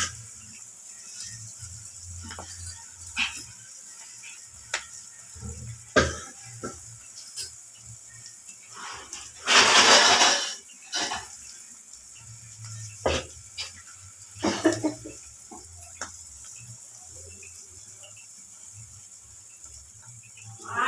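Egg masala cooking in an open pot, with scattered clicks and pops and a loud burst of hiss lasting about a second halfway through, over a low hum that comes and goes.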